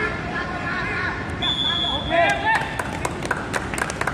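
Spectators' voices calling out at a sambo bout, with a single steady high whistle-like tone lasting about a second, then scattered hand claps in the second half.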